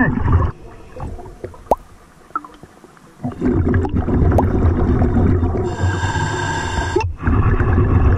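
Underwater sound of a scuba diver breathing through a regulator. A quieter stretch with scattered clicks comes first; then, from about three seconds in, loud rumbling exhaust bubbles and breath noise.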